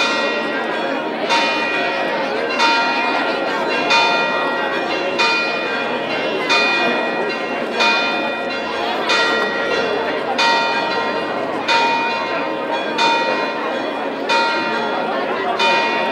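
A single church bell struck at a steady pace, about one stroke every 1.3 seconds, each stroke ringing on into the next, over the murmur of a crowd.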